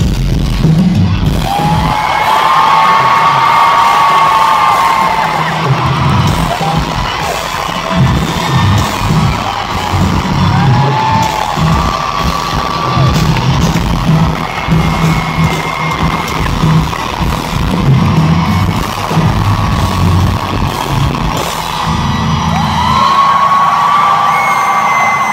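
Pop-punk band playing loudly live with drums and guitars, heard from within the crowd, with audience whoops and cheers over the music.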